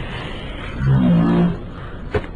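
A man groaning in pain after a fall: one short, low groan about a second in, over a steady background hiss.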